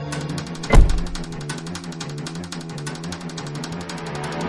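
Plastic wheelie-bin lid slamming shut once, a loud thump about a second in, over background music with a fast ticking beat.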